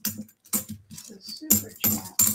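Half-dollar coins clicking and clinking against each other as a gloved hand slides them out of a roll. The clicks are scattered at first and come thick and fast in the last half second.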